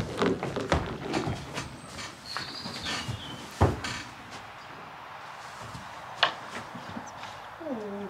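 A horse's hooves knocking on a horse lorry's ramp and floor as she walks aboard, then a few single knocks and shuffles as she shifts her feet in the straw-bedded stall.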